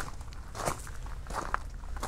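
Footsteps crunching on a gravel path, about three steps in two seconds, over a steady low rumble.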